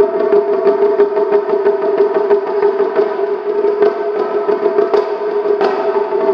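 Japanese taiko drums played in quick, continuous strokes, with a steady held tone sounding over them.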